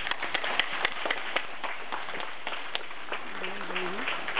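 Scattered clapping from an audience, with sharp individual claps standing out irregularly, several a second. A voice is faintly heard near the end.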